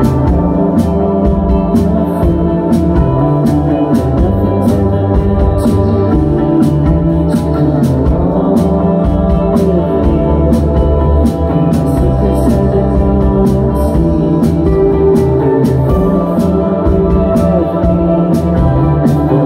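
A rock band playing live: layered, sustained electric guitars over bass, with a steady drum beat of evenly repeating cymbal and snare strikes. Loud and dense throughout.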